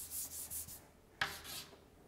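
Chalk writing on a chalkboard: a quick run of short scratchy strokes, a brief pause just before the middle, then a sharper stroke followed by a few lighter ones.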